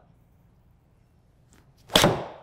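Titleist T100S iron striking a golf ball cleanly: one sharp crack near the end, the ball hitting the simulator screen at the same instant, with a short ringing tail in the small hitting bay.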